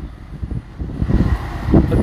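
Low rumble of street traffic, with wind buffeting the microphone.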